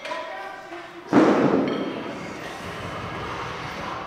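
Strongman log press: a sudden loud thud about a second in as the loaded log bar is driven from the chest toward overhead, followed by a rush of noise that fades into a steady lower hum of effort and gym sound.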